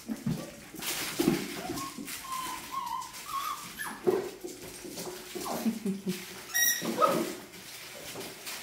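A litter of 39-day-old puppies whimpering with short high whines while they play, mixed with scattered light knocks and clatters of paws and toys on a tile floor.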